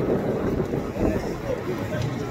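Indistinct voices of onlookers over steady outdoor background noise.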